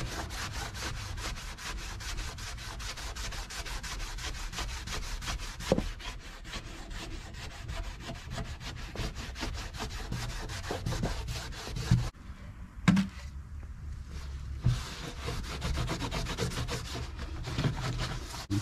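Shop rag rubbing back and forth on a car's bare steel floor pan, wiping on a rust remover that takes the surface rust right off; quick, repeated strokes, easing off briefly about twelve seconds in.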